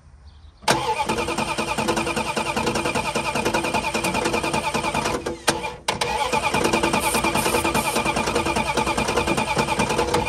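Chrysler 318 V8 cranking and firing on starting fluid sprayed into the carburetor, starting about a second in, faltering briefly about five and a half seconds in and then picking up again. The owner hears noise from the bottom end and takes the engine to be probably not good.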